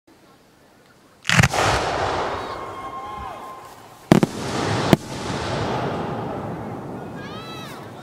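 Aerial firework shells bursting: a loud bang about a second in, then two more sharp bangs about four and five seconds in, each followed by a noisy tail that slowly fades.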